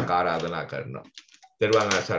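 A voice speaking, breaking off about a second in for half a second, with a few faint clicks in the pause, then speaking again.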